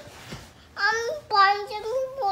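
A toddler singing in a high sing-song voice, with held notes that step up and down in pitch, starting a little under a second in after a quiet breathy moment.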